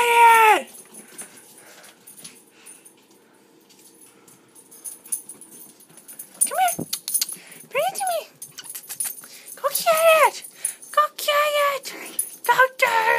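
Small dog giving a few short, high whimpering yips that rise and fall in pitch, clustered from about six seconds in after a quiet stretch. A squeak at the very start.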